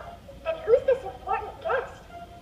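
A cartoon character's voice speaking in short, high-pitched syllables.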